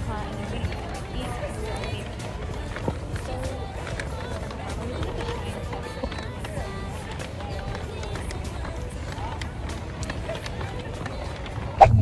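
Open-air shopping-area ambience heard on a handheld phone microphone while walking: background music and indistinct voices over a steady low rumble, with light clicks of handling and footsteps. Near the end a sharp click and a sudden, much louder low rumble take over as the sound moves inside a car.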